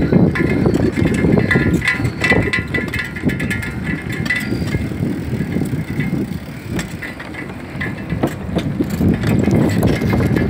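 Bicycle rolling over a wooden plank boardwalk: the tyres rumble and knock irregularly across the planks while the bike rattles.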